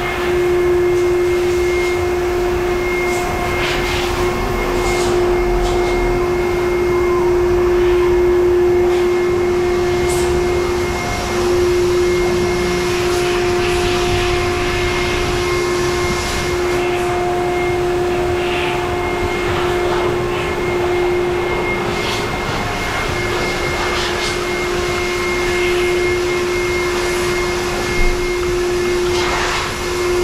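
High-pressure water from a self-serve car wash wand hissing against a car's wheels and paint, over a steady machine hum.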